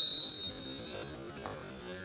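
Umpire's whistle, one steady high blast signalling the start of a hockey shoot-out attempt, dying away about half a second in. A faint knock follows about a second and a half in.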